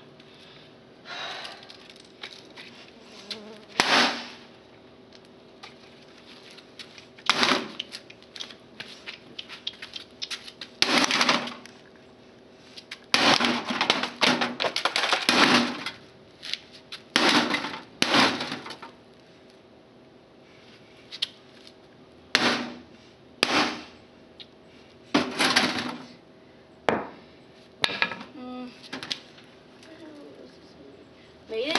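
Irregular knocks and rattling impacts on a CRT monitor's cabinet, about a dozen strikes, several coming in quick clusters, the busiest run just past the middle. A faint steady hum lies underneath.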